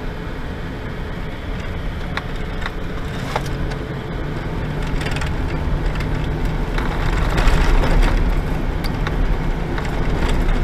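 Vehicle cabin noise while driving on a dirt road: engine and tyre rumble on the loose surface, with a few sharp rattles and knocks from the cab. The rumble grows louder over the second half.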